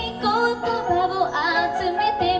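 A girl's lead vocal singing a J-pop idol song into a handheld microphone over a light backing track, with no deep bass under it.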